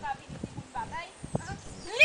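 A faint voice speaking briefly, with a couple of short sharp knocks, and a loud song starting right at the end.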